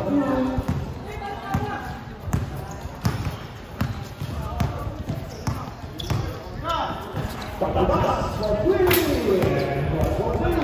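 A basketball being dribbled on a hard court, a string of uneven bounces, with players and onlookers shouting, louder over the last couple of seconds. A sharp bang stands out near the end.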